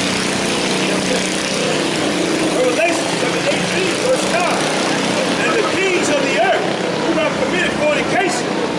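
Street traffic noise at a busy intersection: a steady hum of vehicle engines, with indistinct voices joining in from about three seconds in.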